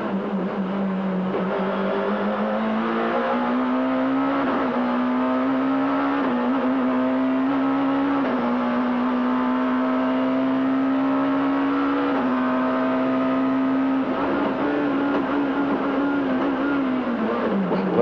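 BMW 3 Series Supertouring race car's two-litre four-cylinder engine at full throttle, heard from the cockpit. The revs climb for the first few seconds, then hold high with small steps at the gear changes, and fall away near the end as the car brakes and shifts down through the sequential gearbox.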